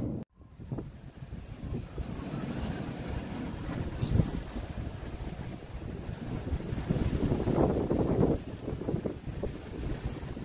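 Waves washing onto a rocky shore, with wind gusting on the microphone; the noise rises and falls irregularly.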